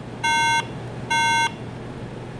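iMac (Model ID 8,1) startup error beeps: two short, identical beeps just under a second apart, the end of a run of three. This is the warning that the RAM is not seated correctly.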